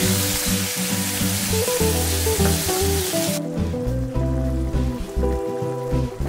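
Tomato and vegetable sauce sizzling in a frying pan as it is stirred with a wooden spatula, over background music. The sizzling cuts off suddenly about three and a half seconds in, leaving only the music.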